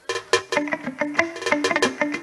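Live band music starting up, led by a plucked string instrument, most like a guitar, picking a quick run of short notes.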